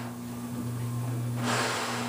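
A steady low hum runs throughout, with a short burst of hiss about one and a half seconds in.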